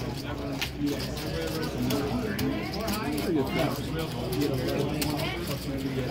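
Indistinct chatter of several voices around a poker table, with a few light clicks among it.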